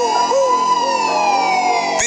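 Siren sound effect over music: one long wailing tone that slides slowly down in pitch, with shorter swooping tones repeating beneath it about twice a second.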